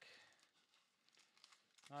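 Faint crinkling and rustling of a sealed trading-card pack's wrapper being handled; otherwise near silence.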